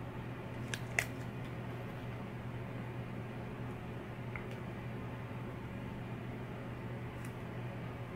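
Faint handling of a sticky adhesive wart bandage being peeled free: two small clicks about a second in, then a few soft ticks, over a steady low hum.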